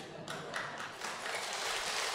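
Faint audience reaction: soft laughter and a few scattered light claps, slowly growing louder.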